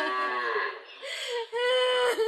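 A woman wailing in a drawn-out cry: a slightly falling cry at the start, a brief lull, then a long steady held note near the end.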